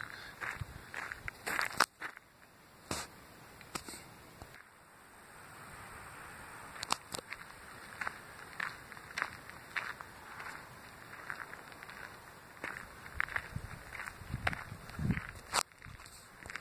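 Footsteps crunching on a gravel path at a walking pace, with short crisp crunches roughly two a second.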